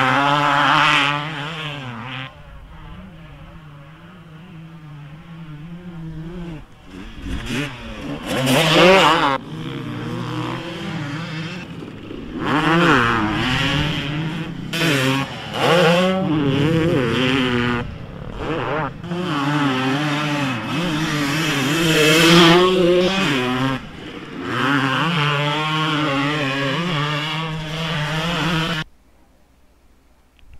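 Dirt bike engine revving up and down again and again, with a quieter stretch of a few seconds soon after the start. It cuts off suddenly about a second before the end.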